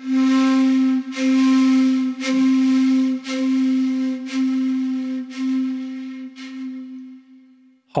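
Sampled shakuhachi from the LORES library holding one breathy low note, played as a slow komibuki (pulsed-breath) articulation. The note swells again about once a second and fades away near the end.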